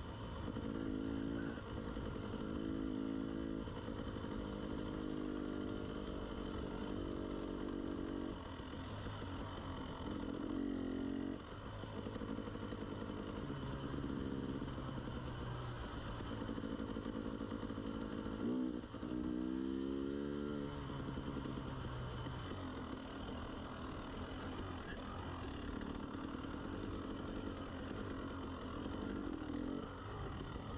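KTM 300 two-stroke enduro dirt bike's engine running under the rider at changing throttle, heard close from the on-bike camera. It eases off briefly about eleven seconds in and again just past halfway, then revs up with a rising pitch.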